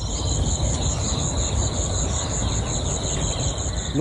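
Crickets chirping in a steady, even trill of about five pulses a second, over a loud, uneven low rumble.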